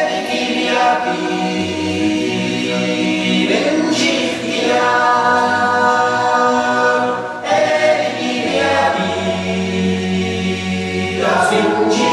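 Unaccompanied choral singing: several voices holding long sustained chords, the harmony shifting to a new chord about every four seconds.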